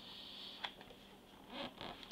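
Sheets of a scrapbook paper pad being turned by hand: a light click about half a second in, then a brief rustle and flap of paper near the end.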